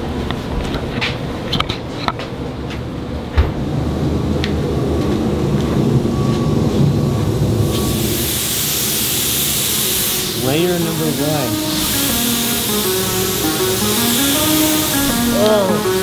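Compressed-air paint spray gun hissing in bursts as automotive paint is sprayed onto the car, starting about halfway in. Background music with a singing voice comes in soon after.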